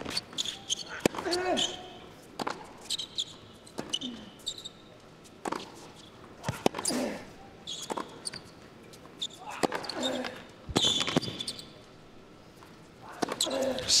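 Tennis rally on a hard court: the ball is struck back and forth with sharp racket hits about every second and a half, and the players grunt with their shots.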